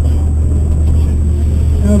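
Ford ZX2's four-cylinder engine running at low, steady revs, heard from inside the cabin as the car rolls slowly.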